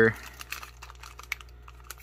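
Soft crinkling of a foil-laminate MRE food pouch being handled and turned over in the hands, with scattered small crackles and a couple of sharper ticks near the middle and end.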